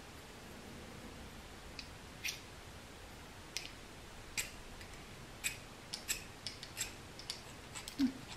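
Light, sharp clicks of a small fire starter and its striker being handled and worked in the hands, about a dozen, sparse at first and coming closer together in the second half.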